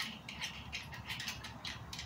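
Faint irregular clicks and ticks of a tripod's T-bar mounting screw being turned by hand, threading a telescope mount's wedge onto the tripod head.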